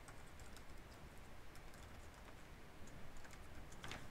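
Faint typing on a computer keyboard: a few irregular, light key clicks.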